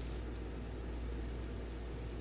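Room tone: a steady low hum and faint hiss, with no distinct event.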